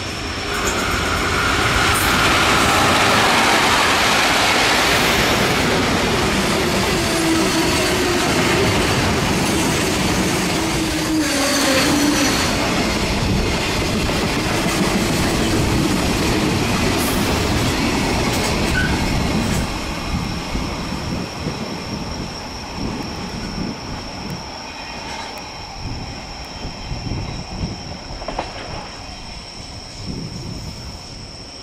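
A freight train hauled by a JR Freight EF81 electric locomotive runs past close by: first the locomotive, then the wagons rolling by with wheels clattering over the rail joints. About two-thirds of the way in it drops in level and the clacks thin out as the rear of the train moves away.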